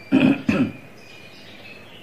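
Two short coughs from a man clearing his throat, close together near the start.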